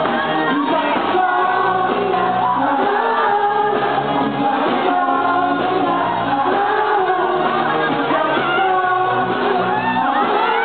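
Live pop band playing, with a female and male vocalists singing together into microphones over drums and percussion.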